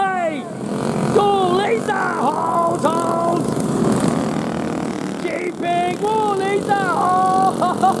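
Several racing go-kart engines running as the pack goes by, a steady drone under a man's loud, excited commentary.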